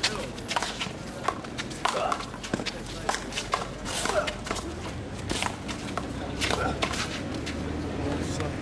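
One-wall handball rally: the small rubber ball slapped hard by gloved hands and smacking off the concrete wall and court, a run of sharp cracks at irregular intervals.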